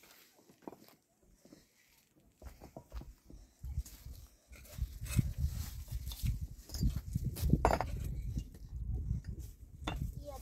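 Loose stones scraping and knocking as they are pried up and shifted by hand, with many irregular knocks over a low rumble that starts about two and a half seconds in.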